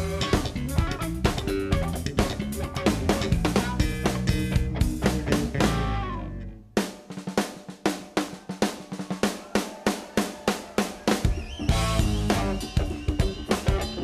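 Live blues band with electric bass, electric guitar and drum kit playing. About six and a half seconds in, the bass and guitar stop after a falling slide, and the drum kit plays alone for about five seconds. Then the full band comes back in.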